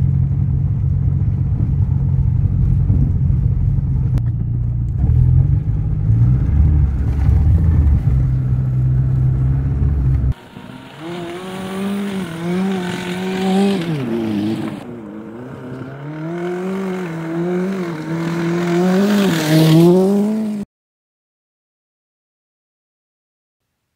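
Peugeot 106 engine and tyre noise heard inside the cabin while driving over rough dirt, a loud steady low drone. After about ten seconds it switches to the car revving as heard from outside, the pitch climbing, dropping as it shifts and climbing again, before cutting off suddenly near the end.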